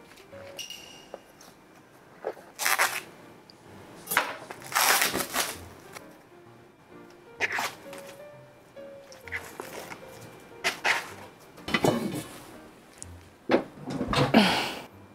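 Soft background music under several short, noisy scrapes and rustles of food being handled on a plastic cutting board: vegetables pushed about and raw sliced meat lifted from its tray.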